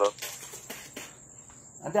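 Crickets trilling steadily at a high pitch in the background, with a few faint clicks.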